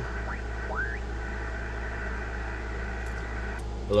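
Yaesu FT-891 HF transceiver's speaker giving steady receiver hiss from the 80-metre phone band, with two short rising whistles about half a second and a second in as the tuning knob is turned across signals. The hiss cuts off sharply near the end.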